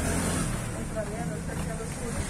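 Low, steady rumble of a motor vehicle's engine in the street, with faint far-off voices in the middle.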